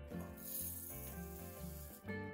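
Granulated sugar pouring into a small steel jar: a steady hiss of grains hitting metal from about a quarter of a second in, over background music.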